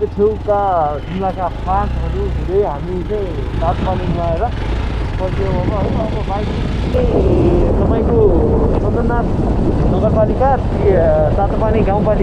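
Hero XPulse 200 single-cylinder motorcycle riding along a road, a steady low engine and wind rumble, with voices talking over it; the rumble grows louder about halfway through.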